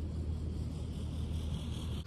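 Steady low rumble of outdoor background noise, with no voice; it changes abruptly near the end.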